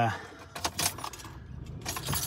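Keys jangling inside a car: a few light metallic clinks, with a small cluster near the end.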